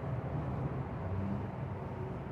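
Steady low hum of an idling engine, even and unbroken, over outdoor background noise.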